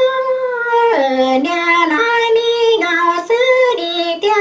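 A high-pitched voice singing: one long held note, then a melody of short notes stepping up and down.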